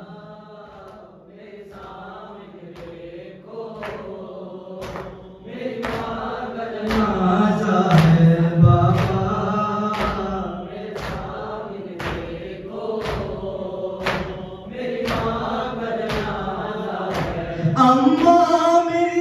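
Men chanting an Urdu noha, a mourning lament, in chorus, with the hall's crowd beating their chests in unison (matam) about once a second. The chanting and beating grow louder about six seconds in.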